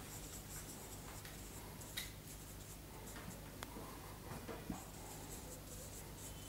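Marker pen writing on a whiteboard: faint scratching strokes with a few light taps.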